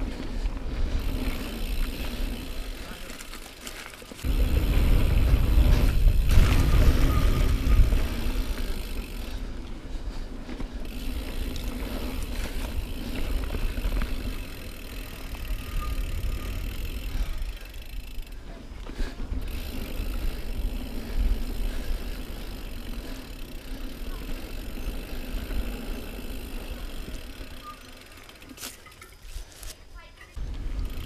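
2018 Norco Range full-suspension mountain bike descending dirt singletrack: tyres rolling and crunching over the trail with the bike rattling over bumps. A louder low rumble runs from about four to eight seconds in.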